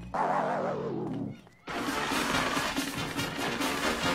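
A short cartoon vocal gasp that wavers and falls in pitch for about a second. After a brief pause, busy cartoon background music with brass starts and carries on over the scene.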